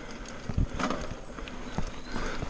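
Mountain bike rolling down a rough dirt trail: a steady rush of tyre and wind noise with scattered knocks and rattles. A loose hydration-pack strap flaps against the camera.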